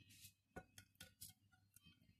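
Near silence with a few faint, light clicks: a plastic slotted spatula tapping against a glass baking dish as it is worked under a baked fish fillet.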